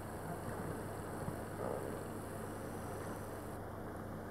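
Steady, even background noise with a constant low hum.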